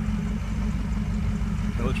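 Land Rover Defender ambulance's engine, running on LPG, idling with a steady low hum.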